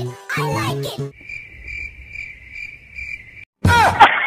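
Children's pop singing stops about a second in. A cricket chirping sound effect follows, a thin chirp pulsing about three times a second for about two seconds: the comedy 'crickets' gag for an awkward silence. A sudden loud, harsh burst cuts in just before the end.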